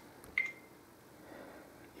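A single short, high beep from the Casio VR200 touchscreen EPOS terminal acknowledging an on-screen key press, about half a second in, fading out quickly.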